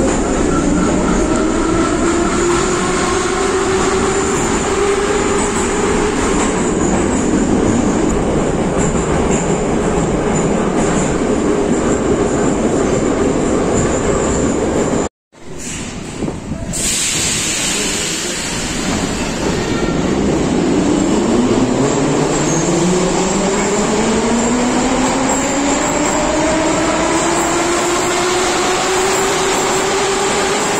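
Moscow metro 81-717 train: inside the car, it runs with the traction motor whine rising as it gathers speed, then holding steady. After a brief gap about halfway, a train of the same type pulls out of the station, its motor whine climbing steadily as it accelerates away.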